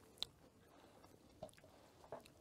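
Faint chewing of a thick-skinned red wine grape, with one sharp click a little after the start and a few soft clicks about halfway through.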